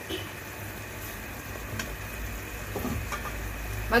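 Chicken wings simmering in pineapple juice in a metal wok, a steady bubbling sizzle, with one faint tick about two seconds in.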